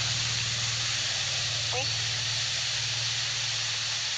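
A steady hiss with a low hum beneath it, unchanging in level.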